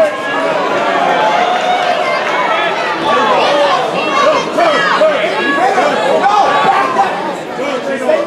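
Fight crowd and corners shouting over one another, many overlapping voices yelling and calling out at once throughout.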